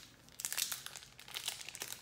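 Foil wrapper of a Pokémon TCG booster pack crinkling in the hands as it is torn open: a quick, irregular run of sharp crackles starting about half a second in.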